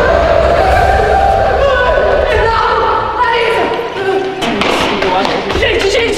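A young man yelling in fright, in long drawn-out screams, as he runs. His footsteps thud on the floor and stairs in the second half, and other voices join in near the end.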